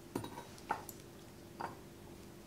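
A spoon knocking and scraping against a metal measuring cup while sour cream is scooped out: three short, light clinks spread across the two seconds.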